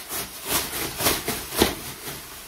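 A large thin plastic bag crinkling and rustling as it is shaken and pulled open, in a run of crackly rustles with the loudest crackle near the end.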